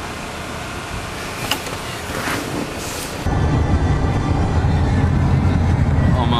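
Steady low rumble of a vehicle on the road, heard from inside the cabin, starting abruptly about three seconds in. Before it there is quieter background noise with a few brief clicks.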